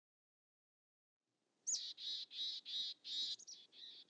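A bird calling, starting about a second and a half in: one high falling note, then a run of repeated notes, about four a second, fading toward the end.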